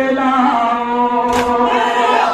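Crowd of male mourners chanting a nauha in chorus on long held notes. About one and a half seconds in comes a single sharp massed slap as they beat their chests in unison (matam).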